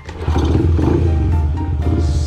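Four-stroke single-cylinder engine of an 88cc custom Honda Monkey running, turning louder about a quarter second in and holding steady, with background music over it.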